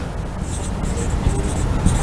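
Marker pen writing on a whiteboard: a run of short, scratchy strokes as words are written.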